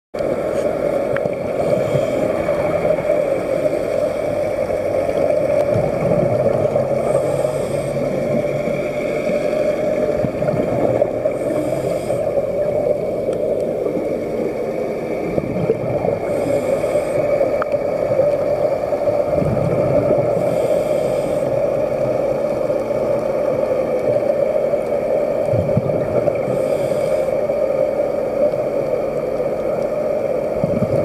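Scuba diver breathing through a regulator underwater: a rush of exhaled bubbles about every four to five seconds, over a steady low hum.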